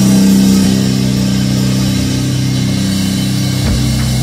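Live rock band playing loud, with electric guitars and bass holding sustained low notes over a drum kit. The low notes change about three and a half seconds in.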